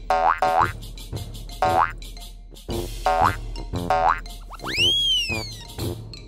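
Cartoon boing sound effects, a series of short springy upward glides, over children's background music, as animated characters hop about. Near the end a whistle slides up and then down.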